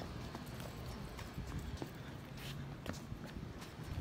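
Light footsteps on concrete, a few scattered clicks over a steady low rumble of wind on the phone's microphone.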